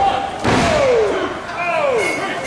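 A single sharp impact in a wrestling ring about half a second in, followed by shouted calls that fall in pitch.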